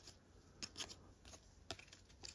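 Faint handling of a stack of glossy trading cards, a few soft flicks and taps as cards are slid from front to back, a couple just over half a second in and one near the end; otherwise near silence.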